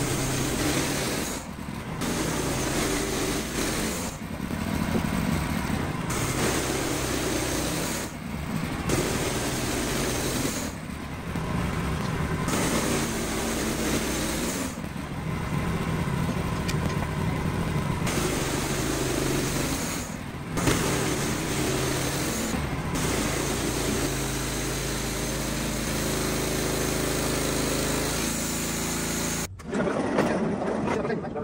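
Wood-Mizer LX55 portable band sawmill running, its engine driving the band blade through a pine log. The sound breaks off abruptly several times, and near the end it settles into a steadier, lower engine note.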